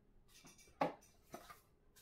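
A few faint taps and rustles of cardboard as small pipe boxes are handled inside a shipping carton and one is lifted out, the clearest tap a little under a second in.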